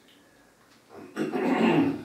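A person's rough cough, a single short burst starting about a second in and lasting under a second.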